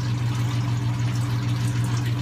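Steady low electrical hum with a faint hiss over it, from running aquarium pump or filter equipment.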